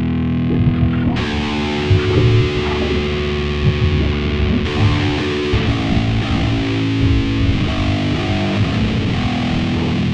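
Stoner/doom metal band playing a slow, heavily distorted electric guitar riff over bass. The sound fills out and brightens about a second in, and again near the middle.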